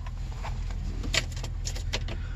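A van's engine idling as a low steady hum, with a few faint clicks and rustles of small items being handled in the cab.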